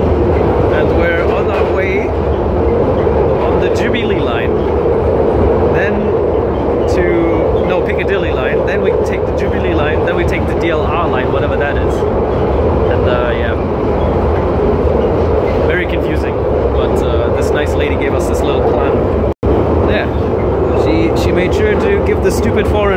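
Loud, steady rumble of a London Underground train running, heard from inside the carriage, with indistinct voices over it. The sound cuts out for an instant near the end.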